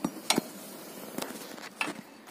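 A few light metallic clicks and clinks of a wrench on a truck starter motor's terminal nut, the clearest about a third of a second in and again near the end.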